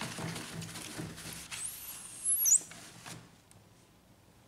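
A damp tissue is rubbed back and forth over a laser printer's transfer belt, making a rubbing swish with a few high squeaks in the middle. It stops about three seconds in.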